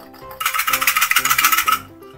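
Background music with a loud rattling, jingling burst of rapid clicks starting about half a second in and stopping after about a second and a half.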